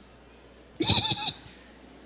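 A man's short, wavering, bleat-like vocal sound into a microphone, about a second in and lasting about half a second: a mocking vocal imitation rather than words.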